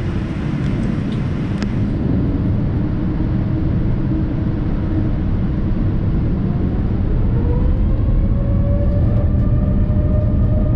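Jet airliner beginning its takeoff roll, heard inside the cabin: a dense, steady rumble of engines and runway that grows slowly louder, with a rising whine from about seven seconds in as the turbofans spool up toward takeoff thrust. A single click comes about two seconds in.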